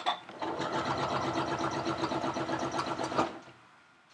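Domestic sewing machine stitching steadily in free-motion quilting, run with the foot pedal held fully down and the speed control set at about half. It starts about half a second in and stops shortly before the end.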